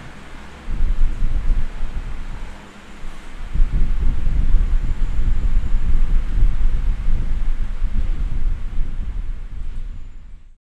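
Low, noisy rumble like wind buffeting a microphone, starting just under a second in, dipping briefly around the third second, then carrying on to the end.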